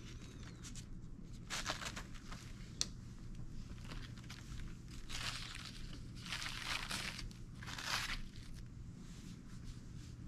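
Crinkling and rustling of a paper-and-plastic sterile underpad from a catheter kit as it is unfolded and slid under the hips of a patient manikin. It comes in several short bursts, with one sharp click, over a low steady hum.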